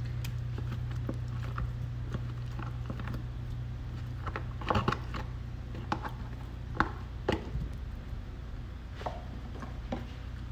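Metal spoon scraping and tapping against a cheese carton and plastic bowl as soft white cheese is scooped out, a handful of short clicks and scrapes with the loudest cluster about five seconds in. A steady low hum runs underneath.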